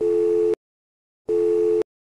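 Electronic countdown beeps: a steady two-tone beep about half a second long at the start, and the same beep again about 1.3 seconds in, with silence between.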